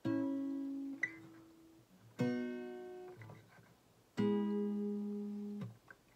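Fender acoustic guitar: three chords, each strummed once about two seconds apart and left to ring, one strum per chord change. The last chord is damped about a second and a half after it is struck.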